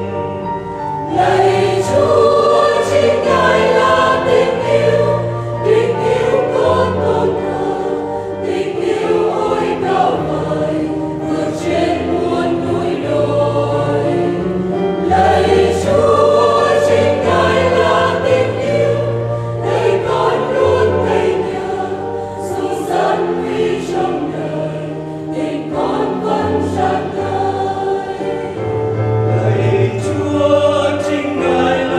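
A choir singing a Vietnamese hymn in phrase after phrase, with short breaths between phrases.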